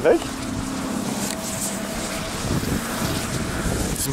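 Wind rushing over the microphone with a faint steady hum from the wind turbine beside it, the hum fading out a little past halfway.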